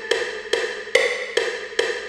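A short, wood-block-like note from a software instrument, struck five times at an even pace of a little over two a second, all on the same pitch with no bass or drums under it.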